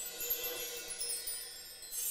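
A high, shimmering chime sound effect, like a wind chime, slowly fading.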